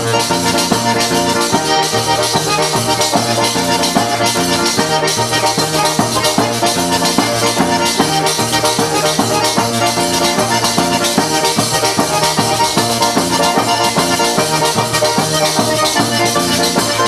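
Instrumental Calabrian tarantella: an accordion plays a fast melody over alternating bass notes, and a tambourine's jingles keep a fast, steady beat.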